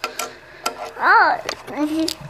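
A few light, scattered clicks and taps from a tiny die-cast toy car and its packaging being handled. About a second in there is a short wordless vocal sound that rises and falls in pitch.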